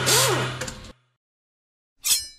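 Jeep Patriot engine idling with a steady hum, fading out about a second in, followed by silence.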